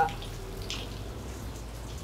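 Steady trickling of water running down a stone-clad waterfall wall into a swimming pool.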